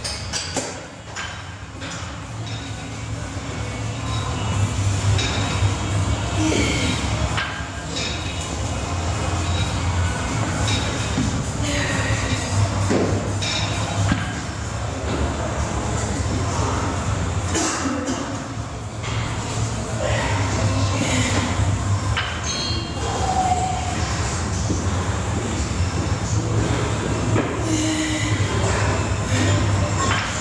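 Gym room ambience: a steady low rumble under background music and voices, with scattered short knocks.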